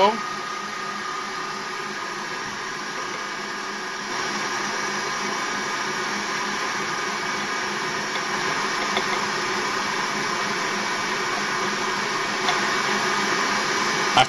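Electric stand mixer running steadily, its motor whining as the beater turns through cheesecake batter in a metal bowl while flour is being beaten in; the running gets a little louder about four seconds in.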